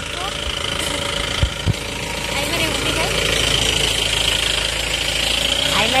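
Mahindra Bolero's engine idling steadily, with two short knocks about a second and a half in.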